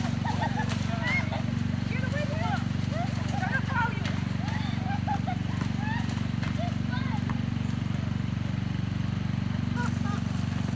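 Players' short voices and calls during a driveway basketball game, over a steady low mechanical hum, with a basketball bouncing on asphalt. The calls are busiest in the first seven seconds or so.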